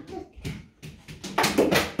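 A ball thrown by a small child hits a plastic water bottle on a table and knocks it over with a sudden clatter about one and a half seconds in.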